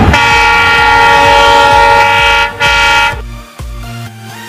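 Electric multiple unit train's horn sounding one long, loud blast of about two and a half seconds, then a brief second blast, as the train approaches.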